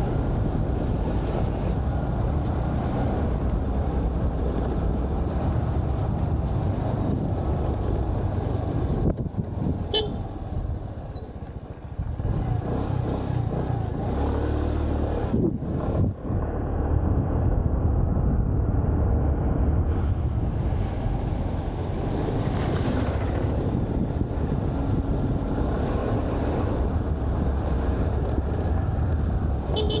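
A scooter's engine running as it is ridden, under a steady low rumble; the level dips briefly about ten seconds in.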